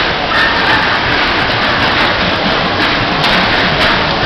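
Loud, steady din of dodgem cars running around the rink, a dense wash of noise with scattered clicks.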